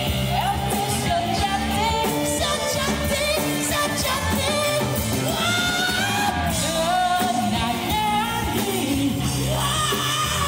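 A man sings live into a handheld microphone through a street PA, over amplified instrumental accompaniment.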